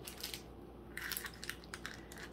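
Faint crinkling of foil candy wrappers and rustling of a paper envelope as wrapped chocolates are slipped into it. The sound comes in a short patch near the start and a longer one from about a second in.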